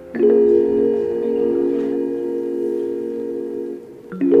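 Background music: a chord with a bell-like struck onset about a quarter second in, held steadily for over three seconds and fading just before the end.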